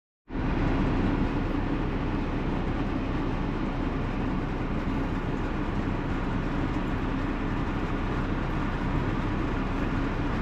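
Car driving along at a steady speed: an even rumble of tyre and engine noise that starts abruptly just after the opening.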